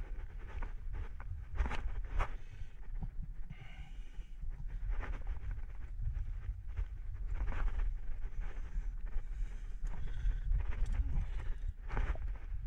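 A rock climber breathing hard, with irregular scuffs and knocks of hands and shoes against the rock, over a steady low rumble of wind on the microphone.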